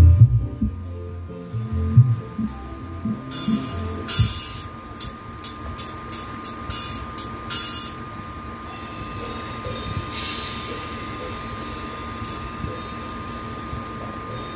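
Sound check of Dhehan Audio's large outdoor PA system, with its stacked subwoofers sending out loud, deep bass notes in the first two seconds. A run of short hissing bursts follows from about three to eight seconds in. After that the system settles to a quieter steady background with a thin continuous tone.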